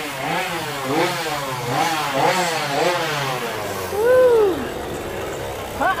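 A gas chainsaw is revved up and down over and over, about two revs a second, then makes one longer rise and fall about four seconds in. After that it settles to a low steady idle.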